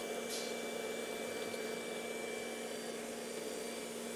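iRobot Roomba j7+ Combo robot vacuum running, a faint steady whir with a low hum.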